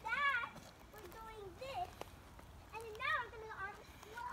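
Young girls' voices talking and calling out in short bursts, with a single sharp knock about halfway through.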